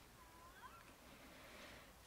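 Near silence, with a few faint, short high chirps or squeaks a little under a second in.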